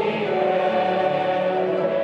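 Congregation singing a slow hymn together, accompanied by violin, flute and piano, with sustained held notes.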